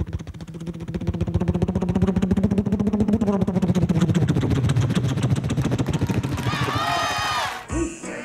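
A man imitating a helicopter with his mouth cupped around a handheld microphone. A fast, steady chop of rotor blades runs over a low hum that rises and falls, then a higher whining sweep comes near the end and cuts off suddenly.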